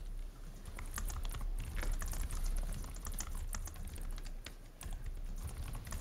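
Irregular rapid clicking of typing on a computer keyboard, over a low steady hum.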